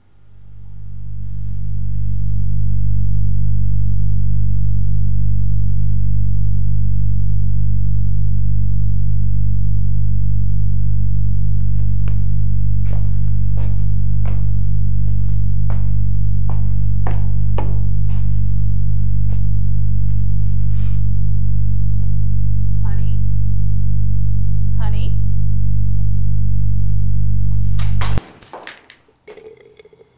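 A loud, sustained low bass drone from a film score that swells in over the first few seconds, holds steady and cuts off suddenly near the end. Faint clicks sound beneath it.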